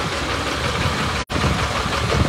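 Flatbed tow truck's engine idling close by, a steady low rumble under street noise; the sound cuts out for an instant a little past halfway.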